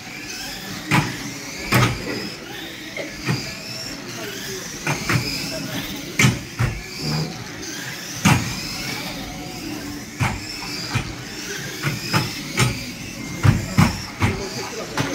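Small radio-controlled stock cars racing: their motors whine, rising and falling in pitch with the throttle, punctuated by sharp knocks about once a second as the cars hit each other and the track barriers.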